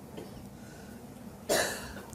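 A single short cough about one and a half seconds in, over quiet room tone.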